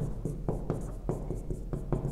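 Marker pen writing on a whiteboard: a run of short, quick strokes, several a second, as an algebraic expression is written out.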